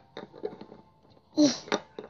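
A few faint light taps of small plastic toy figures being handled, then a voice begins speaking about a second and a half in.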